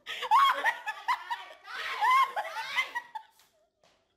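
A person laughing hard in high-pitched bursts, which die away a little after three seconds in.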